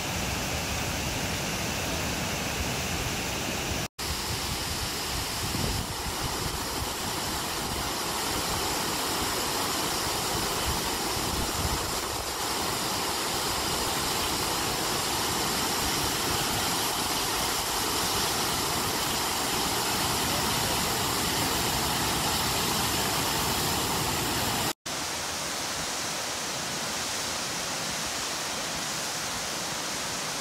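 Steady rushing of large waterfalls on the Genesee River. The sound breaks off for a split second twice, about four seconds in and about five seconds before the end.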